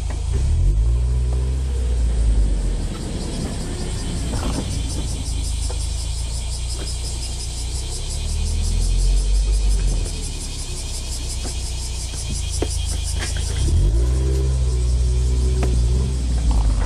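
Mazda NB Roadster's inline-four engine pulling away from a stop and accelerating, heard from the open cockpit with the top down; the engine note climbs about half a second in, again around the middle, and once more near the end as it revs through the gears.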